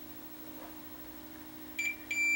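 Fluke digital multimeter's continuity beep in diode test mode: a steady high-pitched beep starts near the end, as the probes find continuity between the red lead of the AV breakout cable and a contact on its 3.5 mm plug.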